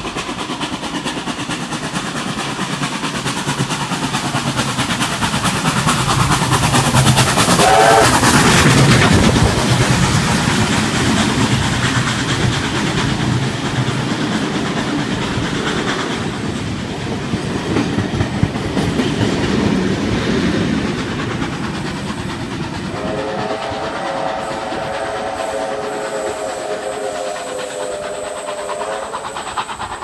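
Heritage passenger train of vintage wooden-bodied carriages running past the platform, wheels clattering over the rail joints, loudest about eight seconds in as the front of the train goes by with a whistle whose pitch bends. Near the end, a long chord-like horn of several tones is held for about six seconds.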